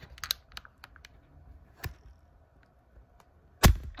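Handling noise on the recording device as hands reach and fumble at it: a few light clicks and taps, then one loud knock near the end.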